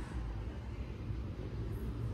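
Shopping cart wheels rolling over a hard store floor, a steady low rumble.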